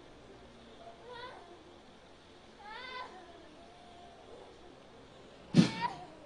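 A woman's high, wavering cries, faint about a second in and again around three seconds, then a sudden loud cry near the end. These are the cries of a woman under deliverance prayer who is manifesting again, taken as a sign that she is not yet free.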